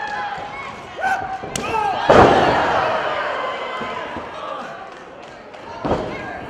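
A wrestler's body slamming onto the wrestling ring mat: one loud boom of the ring about two seconds in that dies away slowly, with lighter thuds near the start and near the end. Short shouts from voices sound around it.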